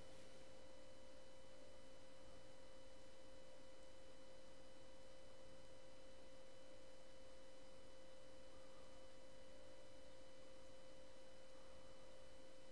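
Faint steady electrical whine at one pitch, with fainter higher tones and hiss beneath it: the background noise of the recording setup, with nothing else heard.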